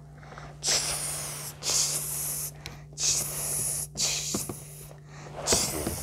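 A person's breathy hissing in about five short bursts, each under a second, over a steady low hum.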